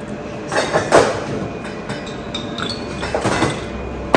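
A small glass jug holding ice and a drink being handled and set down on the bar: a few clinks and knocks about half a second to a second in and again about three seconds in, over steady room noise.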